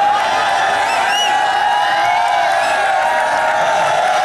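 Steady din of a large crowd at a kabaddi match, many voices at once with no single speaker standing out, and a couple of short whistle-like chirps about a second in.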